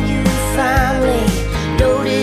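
Country-pop song playing, a full band arrangement with a wavering melodic line over a steady beat of about two strokes a second.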